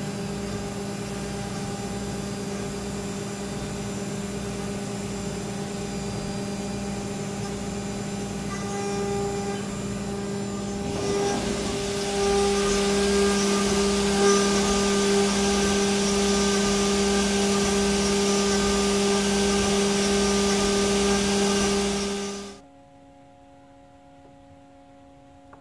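Haas CNC mill running as it machines an aluminium paintball-marker part held in a vise: a steady hum with two clear pitches. About eleven seconds in, a louder hiss joins. It all cuts off suddenly shortly before the end, leaving a faint hum.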